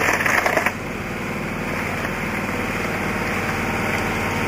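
Engine of the core-drilling machine idling steadily, growing slightly louder, with a gritty rattling noise in the first moment that stops under a second in.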